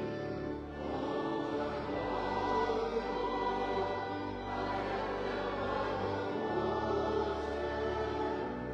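Church choir singing a hymn in sustained chords, with steady low accompanying notes underneath.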